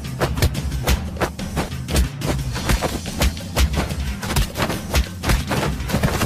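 Background music with a steady drumbeat of about two beats a second over a full bass line.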